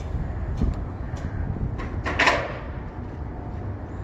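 Wind rumbling on the microphone over footsteps on rubble, with a short scraping rattle about two seconds in.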